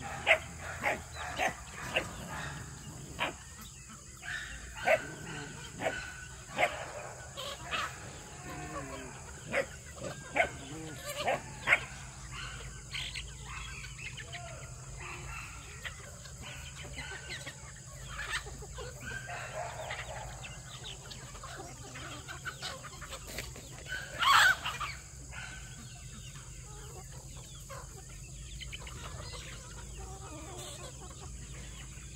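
A large flock of free-ranging chickens clucking and calling while they forage, with many short calls in the first twelve seconds and fewer after. One louder call stands out about twenty-four seconds in.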